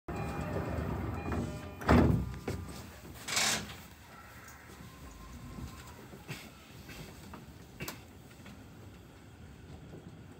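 Doors of a Sobu Line commuter train closing at a station. A few steady tones at the start give way to a loud thump of the doors shutting about two seconds in, followed a second later by a short hiss of air. A few faint clicks follow while the train stands.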